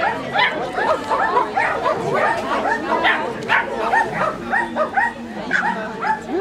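Small dog barking continuously in rapid high-pitched yaps, about three a second, while running an agility course.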